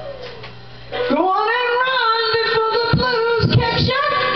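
A woman singing into a microphone over a blues backing track. She comes in about a second in on a rising note and holds it, long and slightly wavering.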